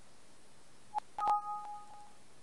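A mouse click about a second in, then the Windows 7 warning chime, a short two-tone electronic sound that rings briefly and fades. It signals a warning dialog popping up, here a prompt to save unsaved changes before the document closes.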